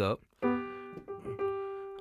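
Digital piano played from a keyboard: a chord topped by a G in the right hand, struck about half a second in, with more notes added about a second in, all ringing on.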